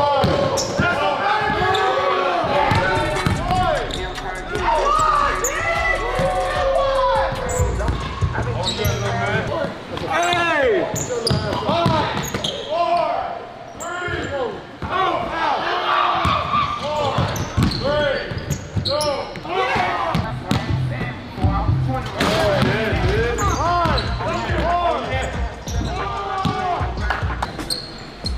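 A basketball being dribbled and bounced on a hardwood gym floor during one-on-one play, with many sharp impacts throughout, mixed with people's voices.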